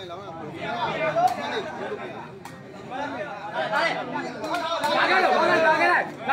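Crowd of spectators at a sepak takraw match talking at once, the many voices growing louder toward the end. A few sharp knocks from the takraw ball being kicked come through the chatter.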